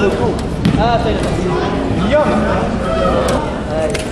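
Several people's voices talking and calling out in a large hall, with a few short sharp knocks.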